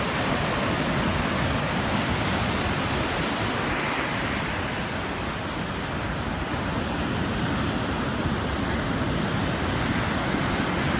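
Ocean surf breaking and washing in against a sea wall: a steady, even rushing noise.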